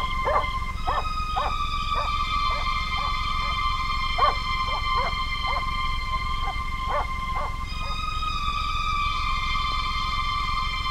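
Eerie sustained synthesizer horror score. Over it come a series of short, falling yelps, like an animal's, spread irregularly through the first eight seconds.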